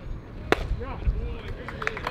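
One sharp crack of a baseball's impact at home plate about half a second in, as the pitch arrives, followed by players' voices calling out.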